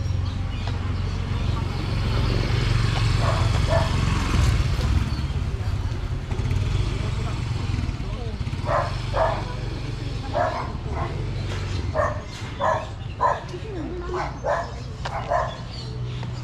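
A dog barking in short single barks: twice a few seconds in, then about ten times over the second half. Under it runs the steady low rumble of street traffic, swelling early on as a small motorcycle engine passes.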